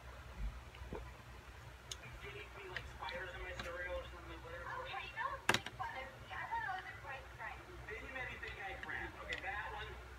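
Faint background voices, too distant to be picked up as words, over a low steady hum, with one sharp click about halfway through.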